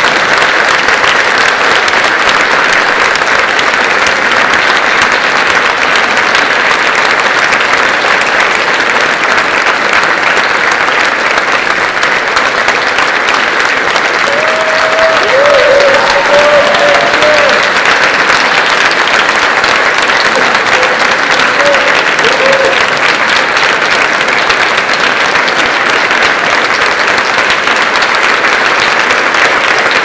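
Audience applauding, loud and steady throughout, with a few brief voice calls heard above the clapping about halfway through.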